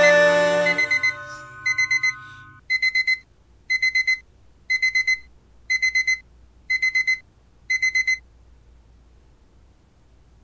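Electronic alarm beeping in bursts of four quick high beeps, about one burst a second, stopping about eight seconds in. A song fades out under the first few bursts.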